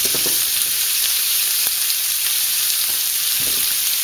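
Raw ground beef sizzling in a lightly oiled frying pan that is still a little too hot, as handfuls of meat are dropped in: a steady high hiss with a few faint crackles.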